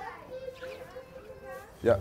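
Faint background voices, a young child's among them, in the stable.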